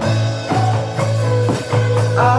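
A four-piece indie rock band playing an instrumental passage: electric bass holding a steady low line, drum kit keeping the beat, and acoustic and electric guitars playing sustained melodic notes over it.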